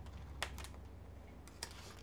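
A handful of faint clicks and taps from hands handling an open hardcover picture book, fingers on the pages and cover, over a low steady hum.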